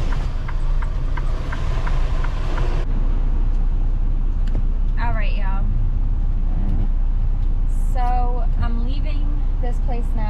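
Semi truck's diesel engine running steadily, heard as a low hum inside the cab. Short pitched vocal sounds come over it about halfway through and again near the end.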